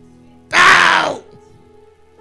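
A man's brief loud vocal outburst, a shout or groan through a microphone and PA, about half a second in and lasting under a second. Soft background music with held chords plays throughout.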